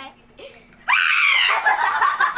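A woman's sudden scream about a second in, rising then falling in pitch, running straight into rapid pulsing laughter: her reaction to the jolt from a wireless EMS massager pad on her leg.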